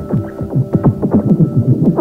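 Electronic music: a steady droning chord under quick, repeated falling-pitch blips, several a second.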